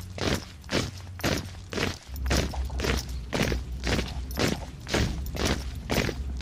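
Footsteps at an even marching pace, about two steps a second, over a steady low rumble of wind on the microphone.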